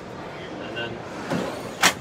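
Hum of a busy indoor exhibition hall with faint distant voices, and one sharp knock near the end, from something hard inside the trailer being handled.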